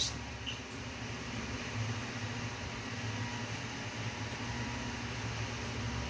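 Steady background room noise: a low hum with a faint hiss, and no distinct sound events.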